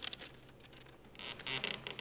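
A sheet of paper being handled and crinkled: a few small ticks, then a denser crackling rustle in the second half as it is pulled between two hands.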